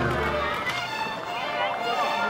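People's voices talking, with a laugh near the start.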